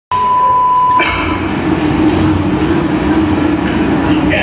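Loud soundtrack played over a nightclub's sound system: a short, steady high beep, then a dense, continuous rumble with a held low tone.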